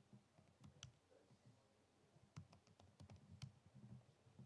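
Faint typing on a laptop keyboard: a few key clicks about a second in, then a quicker run of keystrokes in the second half.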